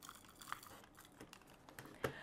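Near silence with a few faint small clicks and taps, the clearest about half a second in, from a glue tape roller and coffee-filter paper being handled on a wooden table.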